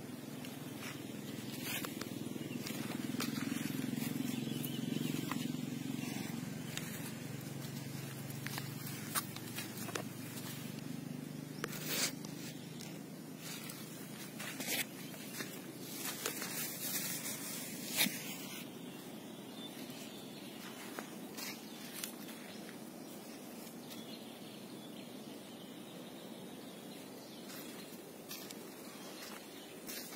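Open-field outdoor ambience with a low hum that swells over the first few seconds and fades out by about ten seconds. Scattered short knocks and rustles from plant leaves being brushed and the phone being handled come mostly in the middle, the loudest at about eighteen seconds.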